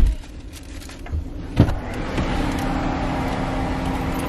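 A heavy thump right at the start, then a sharp click about a second and a half in as the car's rear door is unlatched and opened, after which a steady hum and outdoor noise come in through the open door.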